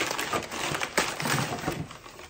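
Brown kraft paper packing crinkling and rustling as a paper-wrapped package is picked up and handled, with irregular crackles throughout.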